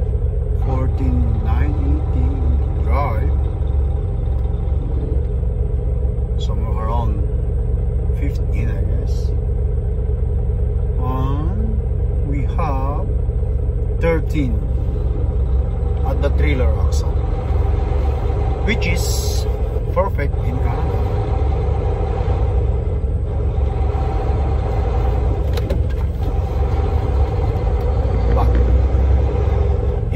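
Inside a semi-truck cab while driving: the diesel engine and road rumble drone steadily and low. A short hiss comes about two-thirds of the way through.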